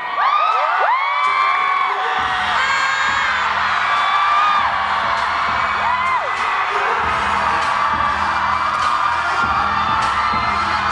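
Audience whooping and screaming in high rising cries, then a hip hop track with a heavy bass beat starts about two seconds in, with the cheering going on over it.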